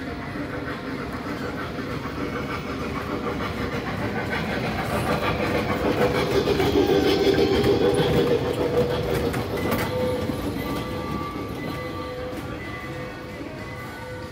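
A small trackless kiddie train with open passenger carriages drives past close by. Its sound grows louder to a peak about seven seconds in as it draws alongside, then fades as it moves away, with music playing throughout.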